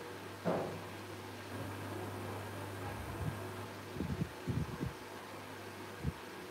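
Hands pressing and working wet clay: a sharp tap about half a second in, then a cluster of soft low thumps near the end, over a steady low hum.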